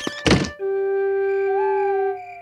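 A door shuts with a single thunk. A soft musical cue follows: a held low woodwind note, joined about a second and a half in by a higher note that bends up and holds.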